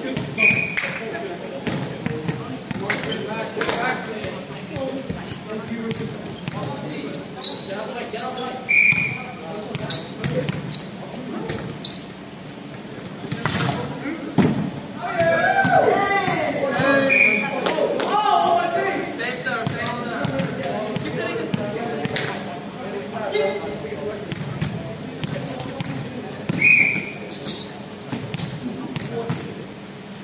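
Volleyball being bounced and struck on a sports-hall court, with players' indistinct voices and calls echoing in the hall. A few short high squeaks are heard along the way.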